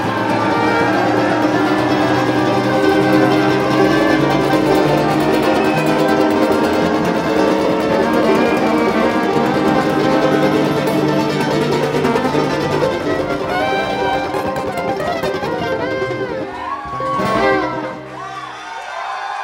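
Live bluegrass band playing an instrumental break with no singing: fiddle, banjo, mandolin, acoustic guitar and upright bass.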